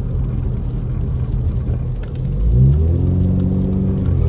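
Steady low road and engine noise inside a car driving on wet pavement. About two and a half seconds in, a low pitched hum rises in pitch and then holds, louder, to the end.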